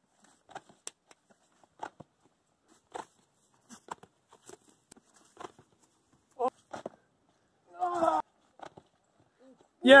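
A climber's hands and rock shoes scuffing and tapping on a granite boulder in short, quiet touches, broken by two effortful grunts past the middle. A loud cry of "Yes" comes at the very end as he comes off the rock onto the pads.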